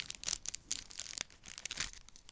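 Plastic Hot Wheels mystery-model blind bag crinkling as it is torn open by hand, in a quick, irregular run of crackles.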